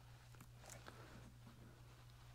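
Near silence: room tone with a steady low hum and a few faint, short clicks from hands handling wire and a crimping tool.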